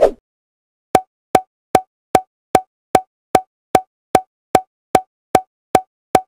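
A short pop sound effect with a brief mid-pitched tone, repeated thirteen times at an even pace of about two and a half a second, each pop marking a checkmark being added to the screen.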